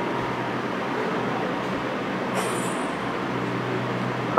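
Steady rushing noise with a low hum, holding at one level throughout, with one short click about two and a half seconds in.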